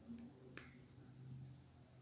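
Near silence: faint room tone with two short, sharp clicks in the first second, the louder about half a second in.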